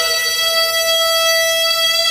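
Piri, the Korean double-reed bamboo oboe, holding one long note at a steady pitch, with no vibrato, in a slow solo of Korean court music.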